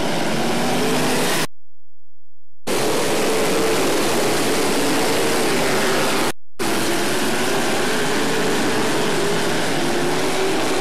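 A field of open-wheel dirt modified race cars running hard around a dirt oval, a dense engine sound whose pitch wavers as the cars pass. The sound cuts out completely for about a second near the start and again briefly a little past midway.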